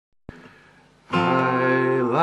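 A single click, then about a second in an acoustic guitar and a man's singing voice start together on one held, steady note.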